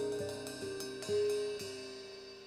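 Live band music fading out, with sustained tones and a new note struck about every half second.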